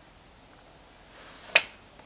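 Quiet room tone, then a faint rising hiss and a single sharp click about one and a half seconds in.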